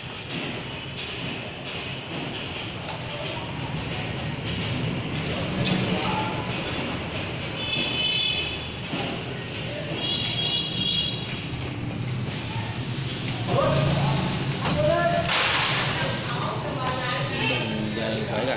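Background voices and music, with scattered knocks and clatter and a brief burst of hiss about fifteen seconds in.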